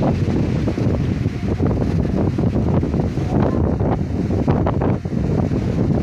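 Strong wind buffeting the phone's microphone: a loud, continuous low rumble that rises and falls with the gusts.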